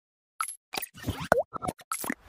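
Logo-animation sound effects: a quick run of short synthetic pops and blips, about eight in a second and a half, starting about half a second in. One near the middle slides down in pitch.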